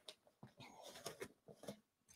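Near silence: room tone with a few faint clicks and rustles of an object being handled.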